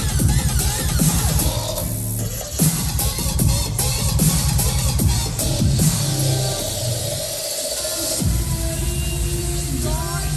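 Loud dubstep played over a club sound system and recorded on a phone from the crowd, with heavy pulsing bass. The bass briefly drops out about two seconds in, then again for about a second near the seventh second before coming back in.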